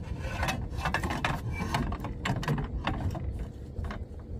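Irregular clicks, knocks and rattles from handling the removable door of a plastic farrowing hut, over a low wind rumble on the microphone.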